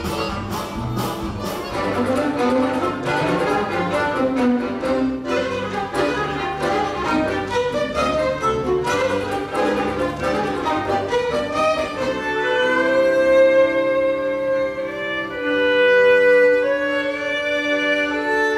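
Fiddle-led folk band playing live with a driving beat. About two-thirds of the way through it changes to slower, long-held fiddle notes with no drums.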